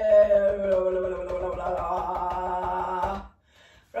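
A woman holding one long, slowly falling "ahh" while rapidly tapping her chest with her fingertips, the taps making the voice wobble. It stops about three seconds in.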